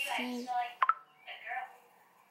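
Quiet voices in short snatches, with a sharp single click just under a second in.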